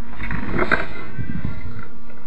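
Slowed-down sound of an RC rock crawler's 540 electric motor and tires working over rock, pulled down into a deep, growl-like surge through the first second and a half.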